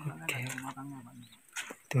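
A man's voice: a drawn-out, level hum or vowel lasting a little over a second, then a short spoken word near the end.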